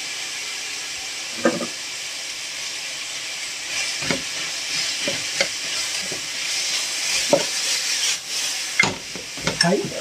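Pork and vegetables, bean sprouts just added, sizzling steadily as they stir-fry in a frying pan, while a metal ladle stirs them and knocks against the pan now and then.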